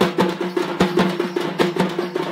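Ceremonial temple drums beaten hard in a fast, driving rhythm, about four to five strikes a second, with a steady low tone sounding underneath.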